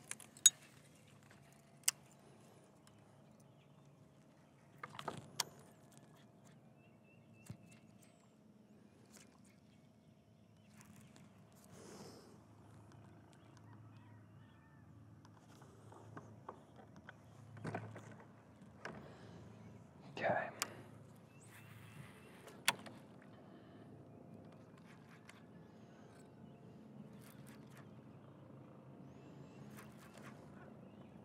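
Fishing tackle being handled on a boat: a few sharp, scattered clicks and short knocks over a low, steady hum.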